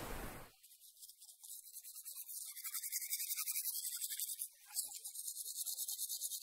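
Recorded sound of teeth being brushed with a toothbrush: quick, even scrubbing strokes, several a second, with a short pause about four and a half seconds in. The sound of lapping waves fades out in the first half second.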